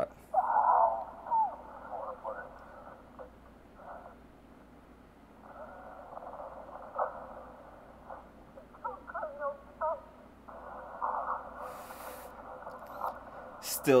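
Movie soundtrack played thin and muffled, cut down to a narrow middle band, with voice-like calls and a few sharp hits. A short hiss comes about twelve seconds in.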